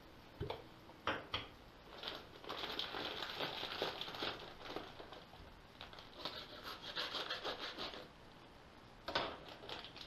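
A foil pouch crinkling and a dry ground powder pouring into a glass jar in a long run of rustling and hissing, after a few sharp clicks as the jar's wooden lid comes off. Near the end, a sharp knock as a knife is set down on the stone counter.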